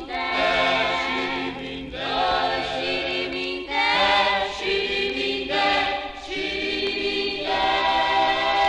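A vocal group singing long held chords in harmony, moving to a new chord about every two seconds, on a 1957 Brazilian popular-music record.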